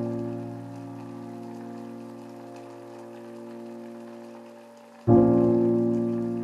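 Intro of a nu-disco/deep-house track: a sustained keyboard chord fading slowly, struck again about five seconds in, over a faint crackling, rain-like texture.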